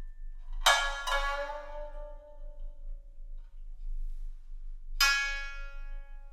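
Shamisen (sangen) notes struck with a plectrum: two sharp strikes about a second in, ringing and fading slowly. After a long pause, another strike comes near the end.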